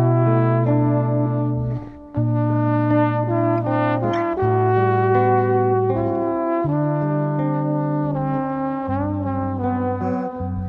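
Trombone playing a melody of held notes over electric bass, in an arrangement of a Sardinian folk song, with a short break between phrases about two seconds in.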